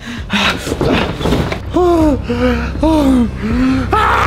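Wordless vocal sounds from a person: hard breathy gasps for the first second and a half, then four short cries in quick succession, each rising and falling in pitch, like pained groans.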